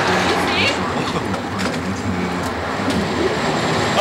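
A steady, noisy rumble with faint, muffled voices.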